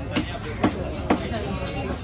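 Heavy fish-cutting knife chopping mahi-mahi on a wooden log chopping block: three sharp strikes about half a second apart.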